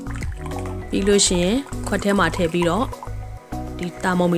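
Clear liquid, likely water, poured from a jug into a glass mug, filling it, heard under a voice talking over background music.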